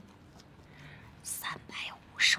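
A woman whispering a few short words, starting about a second and a quarter in, over low room tone.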